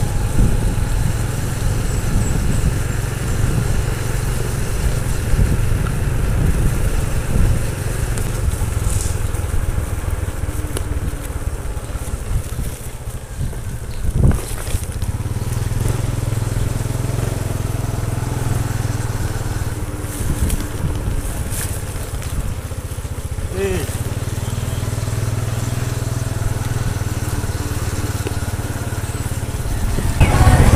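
Small motorcycle's engine running steadily as it rides along a road, with wind buffeting the microphone in an uneven low rumble.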